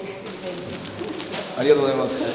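People's voices in a room: short spoken remarks, growing louder and fuller near the end.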